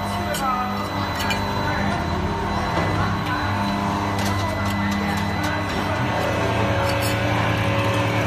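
Steady hum of running factory production-line machinery, holding several fixed tones and growing a little louder and deeper about six seconds in, with scattered light clicks and knocks.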